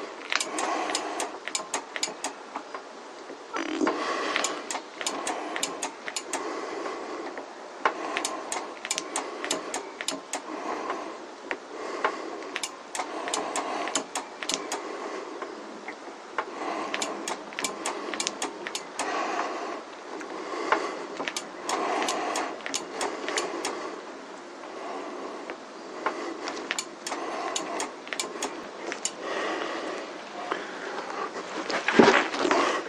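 Front brake lever of a motorcycle being pumped over and over while the brakes are bled, giving clusters of clicks every second or two over a steady noise.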